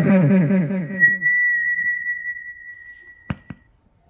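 A steady high-pitched whistle, feedback from the wireless microphone through the small Bluetooth speaker, sets in about a second in and slowly fades. Near the end come two sharp clicks as the receiver's 3.5 mm plug is pulled from the speaker.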